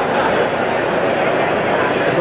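Large crowd of runners talking all at once, a steady dense babble of many voices with no single voice standing out.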